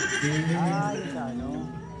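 Voices speaking through a handheld microphone, with a wavering, pitch-sliding stretch about halfway through.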